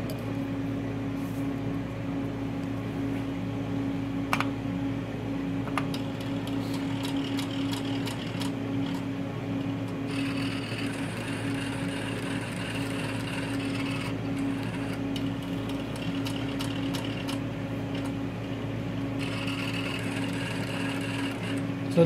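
Rudolph Auto EL III ellipsometer running a measurement: a steady mechanical hum, with a higher motor whir joining for about four seconds about ten seconds in and again near the end. A single click comes about four seconds in.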